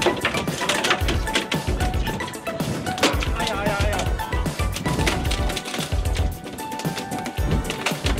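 Background music over repeated slaps and thumps of a dolphinfish (mahi-mahi) thrashing on a boat's deck.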